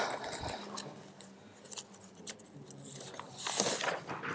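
Quiet room with a few faint, short clicks and a brief rustle near the end.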